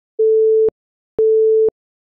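Countdown timer beeps: a steady single-pitched electronic tone, each beep about half a second long, sounding twice a second apart to tick off the seconds of a countdown.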